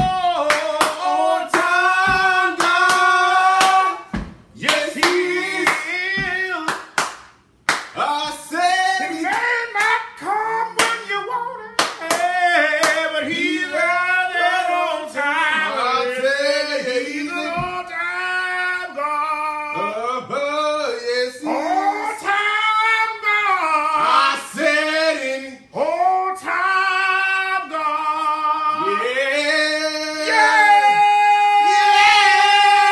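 A person singing a slow, drawn-out old slave song, with hand claps, mostly in the first half.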